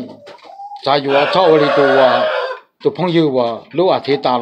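A rooster crows once, a loud raspy call that starts about a second in and lasts nearly two seconds, with talking before and after it.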